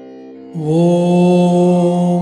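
Devotional mantra chanting: a voice comes in about half a second in on one long held note over a steady drone.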